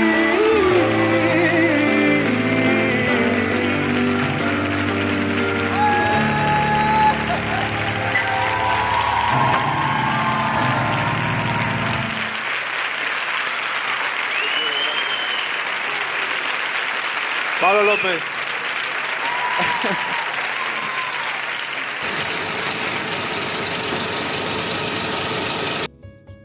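The last chords of a live piano-and-voice ballad on grand piano ring out with a few sung notes, then about halfway through the music stops and a studio audience applauds, with a few brief shouts over the clapping.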